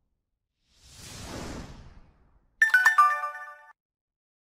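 Sound effects for an animated like-and-subscribe graphic: a soft whoosh that swells and fades, then, about two and a half seconds in, a quick burst of clicks with a bright ringing chime lasting about a second.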